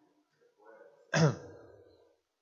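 A person clearing their throat once, loudly, about a second in, after a faint murmur.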